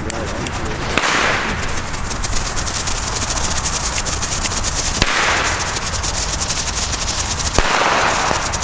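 Fuses of several lit FireEvent A-Böller firecrackers burning on the ground with a steady crackling hiss, broken by a few sharp cracks.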